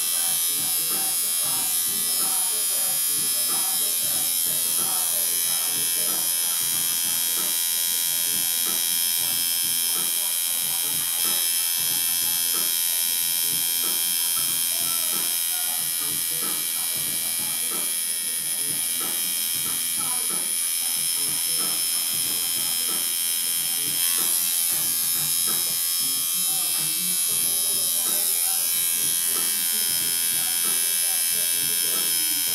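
Electric tattoo machine running steadily with a high, even buzz while lining an outline.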